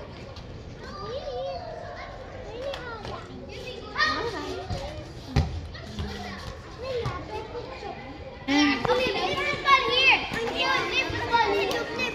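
Young children playing and calling out, their high voices overlapping with some adult talk. The voices get clearly louder about eight and a half seconds in.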